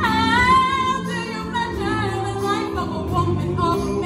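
A female soloist sings a high, wavering gospel-style line over a chorus of voices. She opens on a high note that slides down, then holds it.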